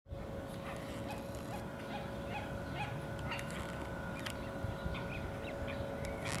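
Great crested grebe chicks giving short, thin begging peeps, repeated about twice a second, over a steady faint hum.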